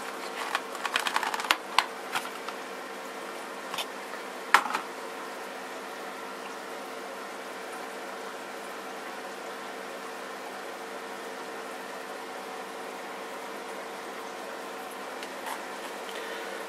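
A cardboard product box is opened by hand and a small metal tin taken out. Rustling and light clicks fill the first few seconds, with one sharper click about four and a half seconds in. Under it a steady mechanical hum carries on alone for the rest.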